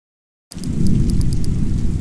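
Channel logo-intro sound effect: a deep, loud rumble that starts suddenly about half a second in, with a quick run of faint high ticks over it in its first second.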